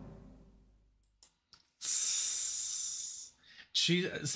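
The last chord of a rock track dies away in the first second. After a short silence a man lets out a long breath into a close microphone, a steady hiss lasting about a second and a half.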